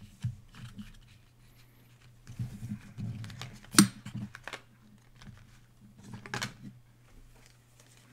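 Foil trading-card pack wrappers crinkling as they are handled and pushed aside, in short bursts, with one sharp click a little before the middle.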